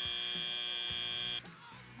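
Robotics competition field's end-of-match buzzer: one steady, buzzy electronic tone that cuts off suddenly about a second and a half in, marking the end of the match.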